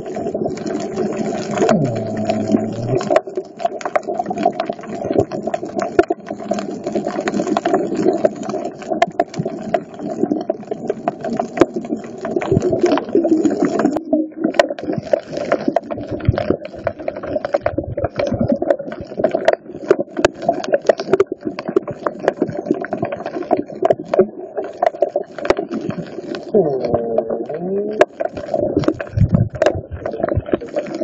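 Underwater sound picked up by a phone's microphone while snorkeling over a reef: a steady low drone with a dense crackle of clicks throughout. Brief rising and falling tones come about two seconds in and again near the end.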